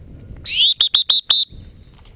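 Dog training whistle: one note that rises into a high, steady pitch, then four short toots at the same pitch. It is a recall signal calling the retriever in to the handler.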